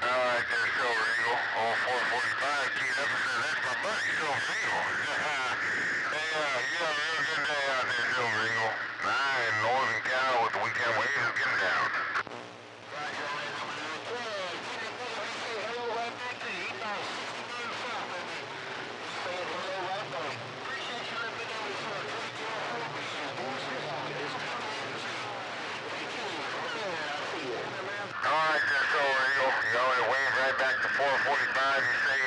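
Garbled, overlapping voices of distant CB stations coming through the radio's speaker over static, warbling too much to make out words. The signal dips briefly about twelve seconds in and comes back stronger near the end.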